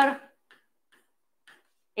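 A few faint, light ticks of chalk tapping on a blackboard as digits are written.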